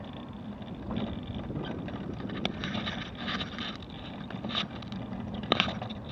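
Mobility scooter riding along a tarmac road: a steady low hum of the electric drive with tyre noise, and a few sharp clicks or rattles from the scooter body.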